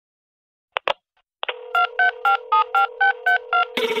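Telephone sound effect: two clicks, then a steady dial tone over which eight touch-tone (DTMF) keys are dialled, about four a second. Band music cuts in just before the end.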